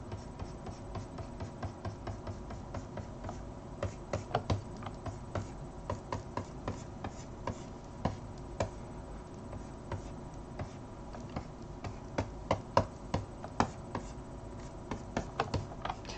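Irregular clicking and tapping of computer keys, some sharper than others, over a steady faint electrical hum.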